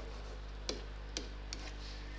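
Three short sharp taps of a stylus on a writing surface as handwriting is added, over a steady low electrical hum.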